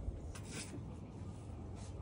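Faint rubbing and rustling of an arm and hand moving inside a large telescope tube, with one brief rustle about half a second in over a low rumble.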